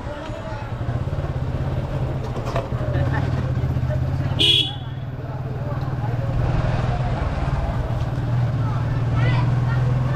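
Motorcycle engine running steadily at low riding speed, with one short horn beep about halfway through. Voices of people in the street are heard faintly.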